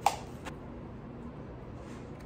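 Paper wrapper being ripped off a cardboard tube of refrigerated cinnamon-roll dough: one short tearing sound, about half a second long, right at the start, followed by low room noise.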